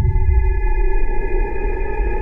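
Cinematic title sound effect: a sustained drone of several held ringing tones over a steady low rumble, the lingering tail of an impact hit, slowly fading.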